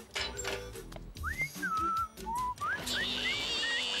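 A short whistled tune over light background music. It starts about a second in and moves in sliding, rising notes.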